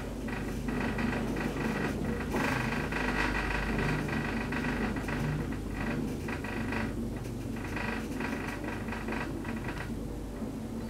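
KONE high-rise traction elevator car descending at speed, heard from inside the car: steady ride noise, a low rumble with thin high tones running over it.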